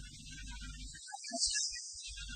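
Low steady electrical hum with hiss. The hum cuts out for about a second in the middle, broken only by a few short blips, while the hiss carries on.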